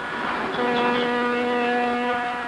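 Ship's horn sounding one long, steady blast that starts about half a second in.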